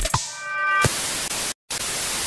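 TV static sound effect: a steady hiss of white noise that cuts out for a split second once, coming in as a music track fades.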